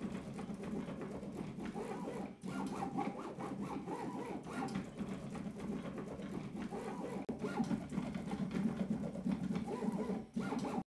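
Closed-loop stepper motors driving a three-axis igus gantry robot with belt-pulley X and Y axes and a lead-screw Z axis: a mechanical whine and hum that rises and falls in pitch as the axes speed up and slow down. There is a brief break about two and a half seconds in.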